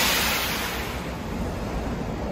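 A sudden hiss of compressed air let out from a stopped Kintetsu commuter train, loudest at the start and fading over about a second, over a steady low hum.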